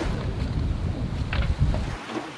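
Wind buffeting the microphone aboard a sailing yacht under way: a loud, uneven low rumble.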